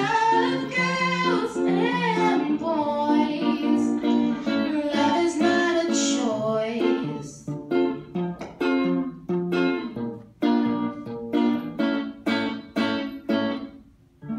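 A young woman singing to electric guitar accompaniment. About halfway through the voice drops out and the guitar carries on alone with short, choppy strummed chords, about three a second.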